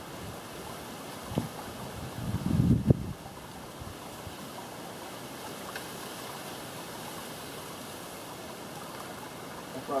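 Wind buffeting the microphone over steady outdoor noise. There is one sharp knock about a second and a half in, then a low rumbling gust that peaks just before three seconds in and is the loudest moment.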